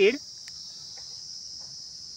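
Steady, high-pitched chorus of insects, unbroken and even.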